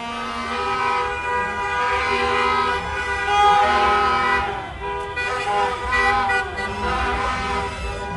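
Several car horns honking and sounding over one another as cars pass along a street, with the hum of moving traffic underneath.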